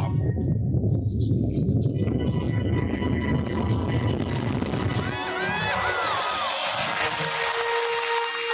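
Deep rumble of a rocket launch, then, about five seconds in, a crowd cheering and whooping over music.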